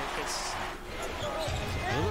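Basketball game audio: sneakers squeaking on a hardwood court, and a basketball bouncing in low thuds during the last half-second.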